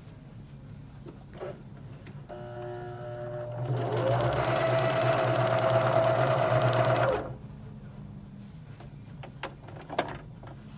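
Elna eXplore 320 domestic sewing machine sewing a straight stitch through denim: it starts slowly about two seconds in, speeds up a second later, runs steadily for about three seconds, then stops suddenly.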